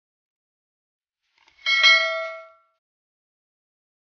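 A single bright bell-like ding, a notification-bell sound effect for a subscribe-button animation, struck about halfway through and ringing out for about a second.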